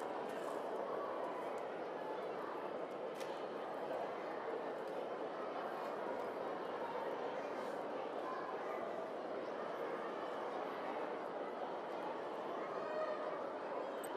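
Granite curling stone running down the pebbled ice after delivery: a steady rumble. Two faint clicks, one at the start and one about three seconds in.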